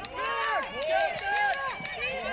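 Several voices shouting and calling out at once across an outdoor football pitch during play.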